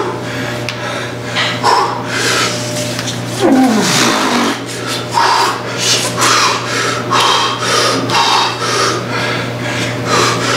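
A man breathing hard and fast in quick forceful breaths while holding a loaded barbell on his back between squat reps of a set taken to near failure. A groan falls in pitch about three and a half seconds in. A steady low hum runs underneath.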